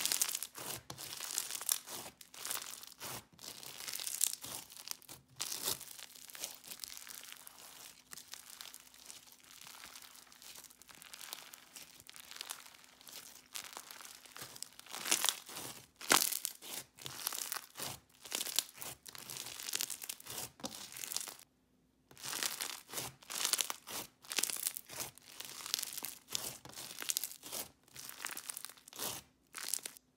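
Crunchy white-glue slushie slime being squeezed, pressed and ripped apart by hand, giving dense, irregular crackling and crunching as the beads in it pop and shift. There is a brief silent break about two-thirds of the way through.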